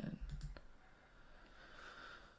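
A single short click about half a second in, a computer mouse clicking to advance a presentation slide, over quiet room tone.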